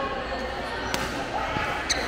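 Two sharp badminton racket hits on a shuttlecock about a second apart during a rally, over steady chatter echoing in a sports hall.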